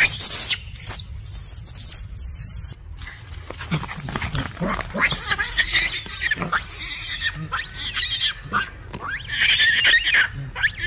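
Long-tailed macaques screaming and squealing in a scuffle. Shrill screams fill the first few seconds and stop abruptly, then comes a run of short, repeated squealing calls that grow loudest near the end.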